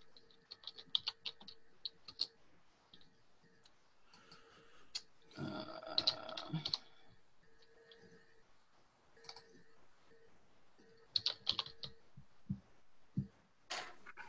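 Computer keyboard typing and mouse-style clicks in scattered clusters, heard through a video-call microphone. About five and a half seconds in there is a brief muffled vocal sound.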